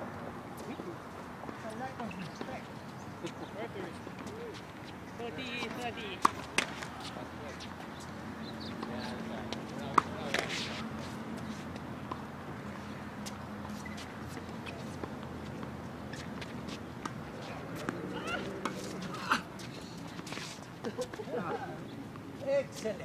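A few sharp pops of tennis balls struck by rackets and bouncing on a hard court, scattered through; the loudest comes about ten seconds in. Faint talking goes on underneath.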